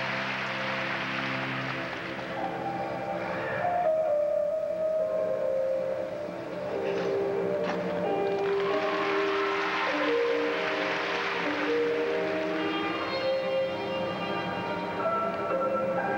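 Instrumental music for a figure skating long program, with long held notes that move slowly from one to the next.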